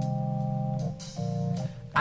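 Rock music between sung lines: held organ chords over a bass line, the chord changing about a second in and breaking off briefly twice.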